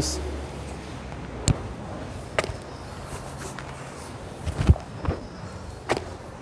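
A person doing burpees on rubber gym flooring: scattered thuds and knocks as hands and feet hit the floor. There is a sharp knock about a second and a half in, and the heaviest thuds come near the end.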